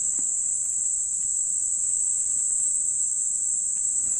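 Insects droning steadily in a single high-pitched band, unbroken throughout.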